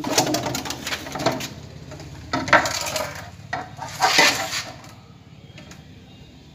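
Metal snake tongs and a hook scraping and clattering against splintered wood and the floor, in four loud irregular bursts that die down near the end.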